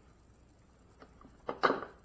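Quiet handling of a coffee maker's plastic filter basket and paper cone filter: a faint tick, then a short click and a brief rustle about a second and a half in, as the filter is set down into the basket.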